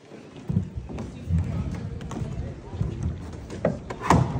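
Low chatter of an outdoor crowd of spectators, with a couple of faint knocks, one about half a second in and one near the end.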